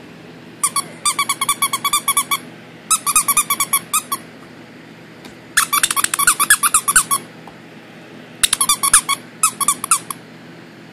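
Rubber squeaker in a dog toy squeezed over and over: four runs of quick, evenly spaced high-pitched squeaks, each run lasting one to two seconds, with short pauses between.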